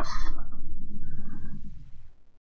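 A man's breathy exhale close to the microphone, fading out over about two seconds.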